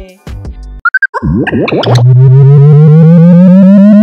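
Synthesized sci-fi sound effect: a few short electronic beeps and quick zapping sweeps, then a loud buzzy synth tone that rises steadily in pitch, a power-up sound.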